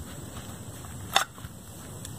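A single short, sharp click about a second in, handling noise as the aluminium bracket pieces are turned in a gloved hand, over a faint steady background hiss.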